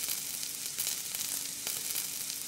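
Oil sizzling in a frying pan: a steady hiss with scattered crackling pops.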